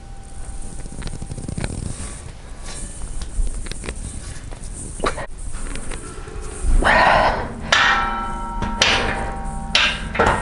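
Empty steel cambered Swiss bar knocking and clanking against the power rack as it is lowered toward the safety straps and pressed back up. The clanks ring briefly and are loudest between about seven and nine seconds in.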